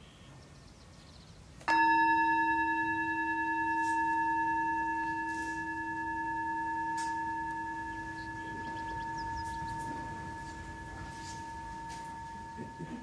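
A metal meditation singing bowl struck once, about two seconds in, then ringing on with a long, slowly fading tone that gently swells and wavers as it dies away.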